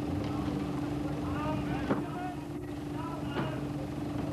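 People's voices over a steady background hum, with a sharp knock about two seconds in and another about three and a half seconds in.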